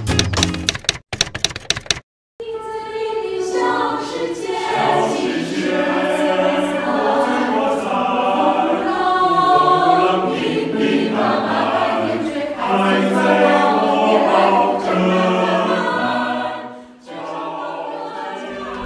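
A mixed choir of men's and women's voices singing a cappella in sustained, shifting chords. It comes in after a brief gap, following about two seconds of music with rapid clicks at the start.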